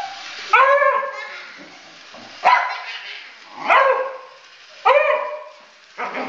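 A dog barking at a small light-up toy car: four sharp barks, one to two seconds apart.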